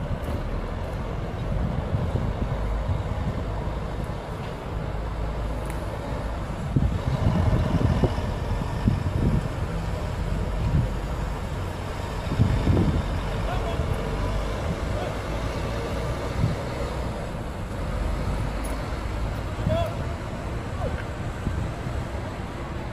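Outdoor street ambience: a steady low rumble of traffic and wind on the microphone, with faint distant voices coming and going.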